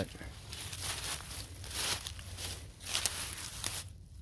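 Dry fallen leaves rustling and crunching underfoot in an uneven shuffle, with a sharper crack about three seconds in.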